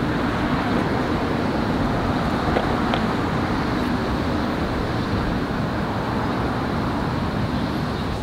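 Steady road traffic noise, an even rumble and hiss of passing vehicles with no single event standing out.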